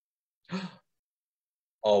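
Near silence, broken once about half a second in by a short, soft breath or sigh from a man, then the start of his speech right at the end.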